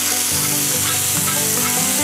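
Soaked Longjing tea leaves and their tea water sizzling steadily as they hit a hot iron wok with a little oil, with a metal spatula stirring them.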